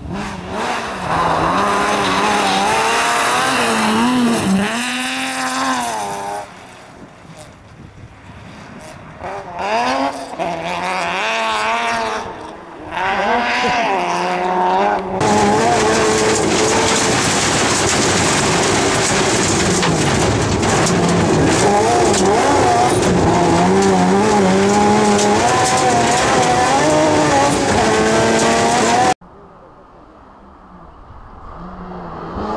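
BMW M3 rally car engine revving hard with rising and falling pitch through gear changes, first heard from the roadside. About halfway through it switches to the sound from inside the car, where the engine is held at high revs with brief dips as it shifts, and it cuts off suddenly near the end.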